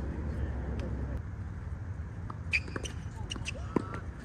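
Tennis balls struck by racquets in a doubles exchange: sharp pops, the loudest about two and a half seconds in and another just before the end, with a few lighter clicks between.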